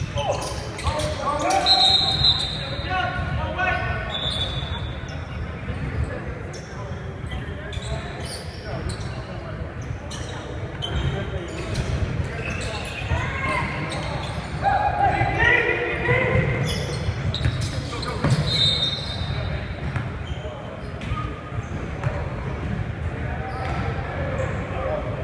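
Basketball bouncing on a hardwood gym floor during a pickup game, with sneakers squeaking and players calling out, all echoing in a large hall.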